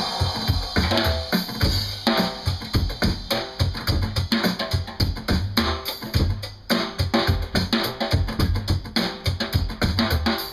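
A drum kit played with sticks: a fast, busy run of drum and cymbal hits over strong low drum beats.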